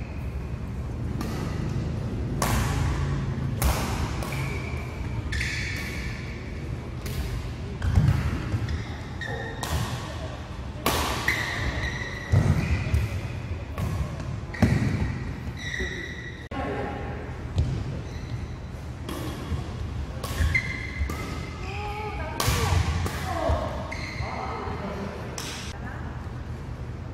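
Badminton rally in a large indoor hall: rackets striking the shuttlecock with sharp, echoing cracks at irregular intervals, and shoes squeaking on the court mat between shots.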